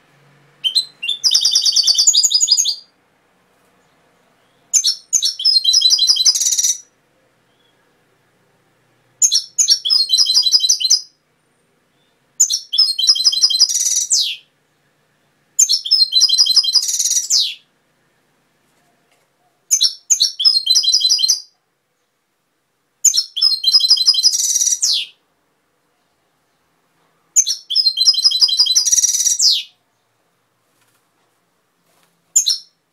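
European goldfinch singing: eight phrases of rapid, high twittering, each about two seconds long, separated by silent pauses of one to two seconds.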